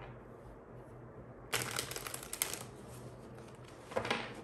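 A deck of tarot cards shuffled by hand, the cards sliding and flicking between the hands. A quick flurry of crackling card clicks starts about a second and a half in and lasts about a second.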